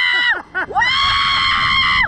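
A woman screaming on a catapult thrill ride: a high scream that breaks off about half a second in, a couple of short falling yelps, then one long held scream.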